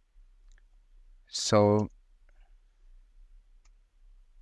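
A few faint, scattered computer keyboard clicks as a formula is finished and entered, with one short spoken word about a second and a half in.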